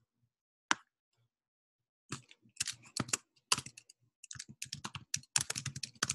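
Typing on a computer keyboard: a single click, then from about two seconds in a fast, uneven run of key presses.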